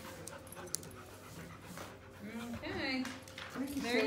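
A dog whining in short pitched whimpers, mostly in the second half.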